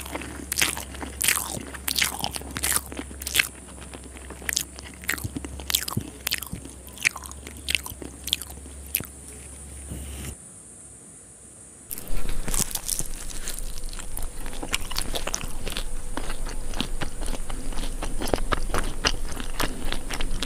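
Close-miked eating sounds: chewing and crunching on rice with fish curry and fried fish, with many quick wet mouth clicks. A short quiet break about ten seconds in, after which the chewing comes back denser and louder.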